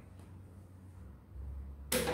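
Quiet room with a low hum, then a single sharp click just before the end.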